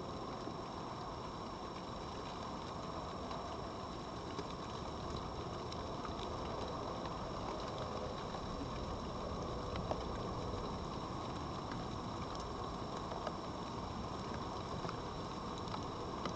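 Steady outdoor background hiss with a few faint, scattered clicks.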